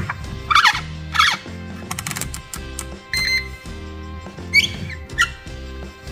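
Background music with a steady beat, with several short squeaks over it and, about three seconds in, one brief steady beep from a UNI-T digital multimeter being used to test an LED board.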